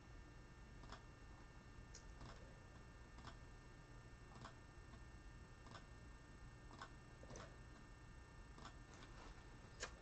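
Near silence: about ten faint, irregularly spaced clicks of a computer mouse as website dropdown menus are selected, over a faint steady hum.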